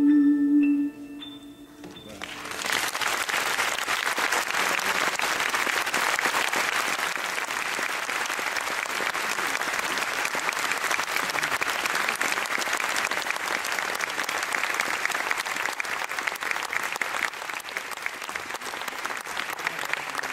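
The song's last held note and a rising run of high instrumental notes end about a second in; then a concert audience applauds steadily.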